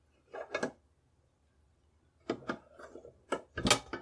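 Bolt body of a Danish Krag-Jørgensen rifle being worked in its receiver, steel on steel: a soft scrape about half a second in, then a run of metallic clicks and scrapes in the second half as the bolt is opened and drawn back, the sharpest click just before the end.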